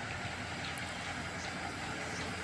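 Steady, even outdoor background noise with no distinct sound events.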